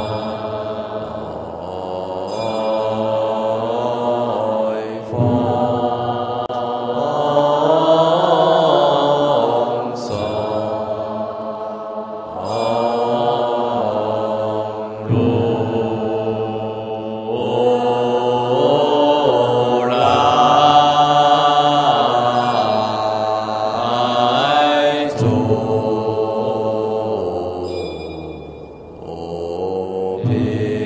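A large assembly of Buddhist nuns chanting a Chinese liturgical verse in slow, drawn-out melodic style (fanbai), in unison, with long held notes that slide in pitch, in phrases of a few seconds each. A single sharp strike sounds about ten seconds in.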